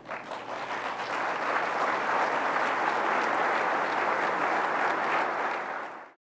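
Audience applauding, building up over the first second or so and holding steady until it cuts off abruptly at the end.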